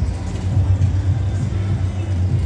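Loud low rumble with a quick, pulsing bass beat at a fairground: bass-heavy music from the ride's sound system mixed with the running pendulum thrill ride, with little treble.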